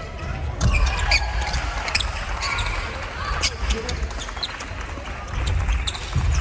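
Badminton doubles rally on a wooden gym floor, with repeated sharp cracks of rackets striking the shuttlecock. Feet thud and shoes squeak on the boards, and everything echoes in a large hall.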